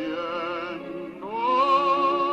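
A song being sung in long held notes with a wide vibrato; about a second and a quarter in, the voice slides up to a higher, louder sustained note.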